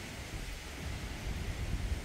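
Steady outdoor background noise: an even hiss over an uneven low rumble, typical of wind on the phone's microphone.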